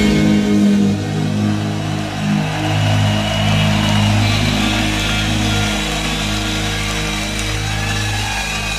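A heavy metal band's last chord held and ringing out, with distorted electric guitars and bass sustaining steadily and slowly thinning.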